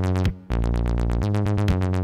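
Electronic music played on synthesizers: a fast, evenly pulsing synth pattern over a steady low bass. The sound drops out for a moment and comes back in about half a second in.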